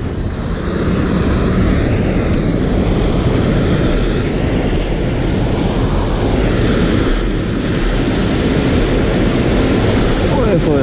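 Steady rush of canal water pouring over a brick weir (canal fall), with wind buffeting the microphone.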